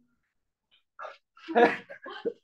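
Near silence for about a second, then two short voice-like outbursts, the second and louder one about one and a half seconds in.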